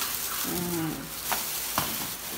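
Thin plastic bag rustling and crinkling as it is handled and lifted with plastic takeout containers inside, with two sharp clicks in the second half.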